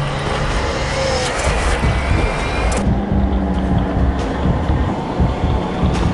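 Dramatic promo soundtrack: a heavy low rumble with held low notes and irregular deep hits. A high hiss drops away about three seconds in.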